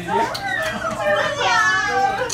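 Speech only: people talking in a room, with a high-pitched, lively voice in the last half second or so.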